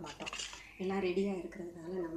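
Kitchen storage jars clinking and knocking against each other a few times near the start as they are handled, then a woman speaking.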